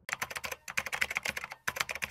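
Computer keyboard typing sound effect: a rapid run of key clicks in three bursts with brief pauses between them.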